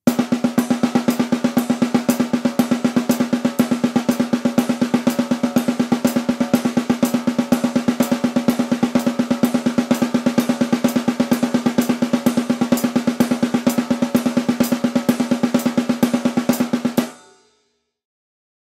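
Snare drum struck with wooden sticks in a fast, even run of alternating single strokes, a speed and regularity exercise for blast beats. The drumming stops abruptly about a second before the end.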